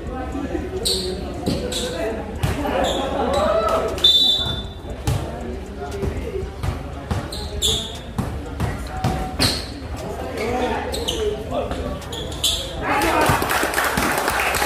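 A basketball dribbled on a painted concrete court, a series of sharp bounces with uneven spacing, echoing under a metal roof, over the chatter of onlookers. The voices grow louder near the end.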